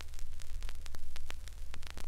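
Vinyl record surface noise with no music: scattered crackles and pops over hiss and a steady low hum, as the stylus rides the groove at the end of a side of a 1951 RCA Victor 10-inch mono LP.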